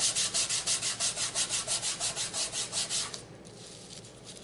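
Fingertips rubbing rapidly back and forth over microfine glitter stuck to adhesive tape on a card front, burnishing the glitter down: even scratchy strokes about six a second that stop about three seconds in.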